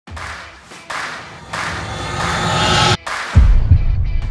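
Intro music with sound effects: a few noisy swooshes that build in loudness, cut off suddenly about three seconds in, then a deep bass hit.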